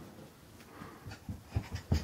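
A toddler's quick footsteps thudding on carpet as she runs up close, with breathy panting; the thuds grow louder toward the end.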